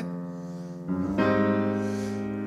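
Piano playing slow jazz chords: a held chord rings and fades, then a new chord comes in about a second in, in two staggered attacks, and sustains.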